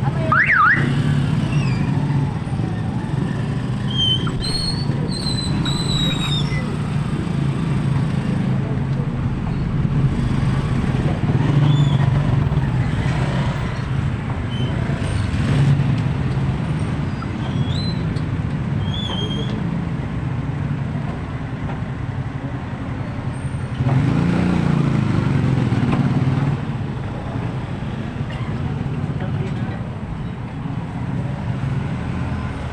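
Busy street traffic: the steady running of motorcycle and tricycle engines in slow traffic, with a few short high chirps. A louder engine passes close by late on.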